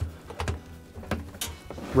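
Rubber washer door boot being pressed and worked onto the outer tub lip by hand: a few scattered soft knocks and rubbing sounds over a low steady hum.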